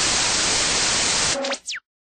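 Outro sound effect: a burst of TV-style static hiss lasting about a second and a half, then two quick electronic zaps, the second sweeping sharply down in pitch, before it cuts to silence.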